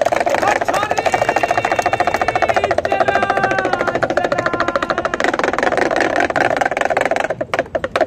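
A damru, the small two-headed hand drum of a monkey showman, beaten fast and steadily, with a melody of held notes over it for the first few seconds. The drumming thins out near the end.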